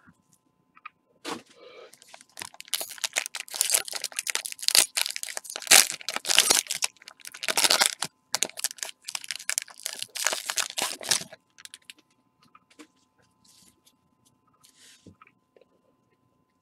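Plastic trading-card pack wrapper being torn open and crinkled by hand, a dense crackling rustle that stops about three-quarters of the way through, leaving a few faint rustles.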